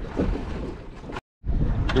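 Wind buffeting the microphone over the wash of sea around a small open boat, a low rumbling noise that drops out completely for a moment just over a second in.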